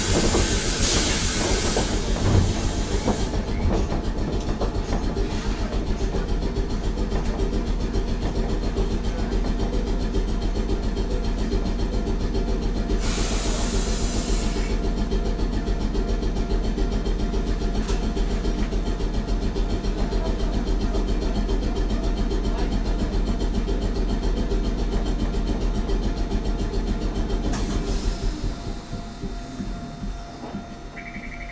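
Randen Mobo 621 tram car standing at a station: a steady mechanical running hum with a fast, even pulsing from its onboard equipment, which drops away near the end. Bursts of compressed-air hiss come at the very start and again about 13 seconds in.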